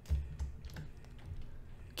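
Computer keyboard being typed on: a few scattered, irregular key clicks, the loudest a knock just after the start.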